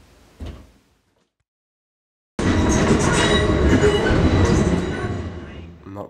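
Passenger train running, heard from inside the carriage: an even running noise with faint steady whines on top. It cuts in suddenly about two and a half seconds in, after a short silence, and eases off near the end.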